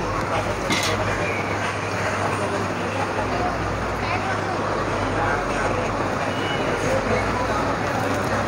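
Busy market ambience: a steady din of many indistinct voices mixed with street traffic noise.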